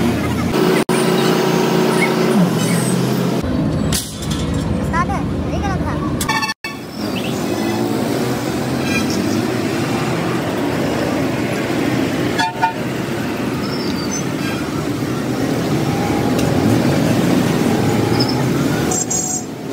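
Busy city road traffic, with motorbike and car engines running past. A vehicle horn sounds steadily about a second in, and the audio cuts briefly twice.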